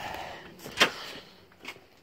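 A storm door being pushed open as someone steps out through it: one sharp click a little before the middle, then a fainter tap near the end, over a faint hum that fades away.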